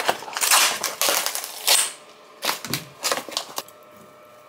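Plastic salad-chicken pouch crinkling and crackling as the chicken is squeezed out into a glass bowl, for about two seconds. After a short pause come a few briefer bursts of a metal fork shredding the chicken against the glass bowl.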